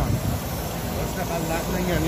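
Daewoo Nexia's 16-valve E-TEC engine idling steadily, with voices talking over it.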